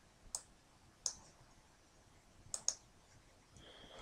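Faint computer mouse clicks: four short clicks, the last two in quick succession, as guidelines are erased one by one in a modelling program.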